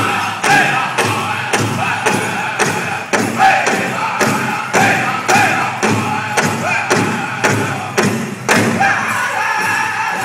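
Powwow drum group: a large hand drum struck by several drummers in a steady fast beat, with the singers' high-pitched chanted song over it.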